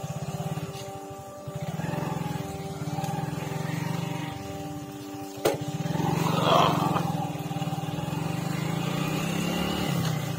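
Single-cylinder motorcycle engine running at a steady pace, with its even, rapid firing pulse. About five and a half seconds in there is a single sharp knock, followed by a louder rush of noise for about a second.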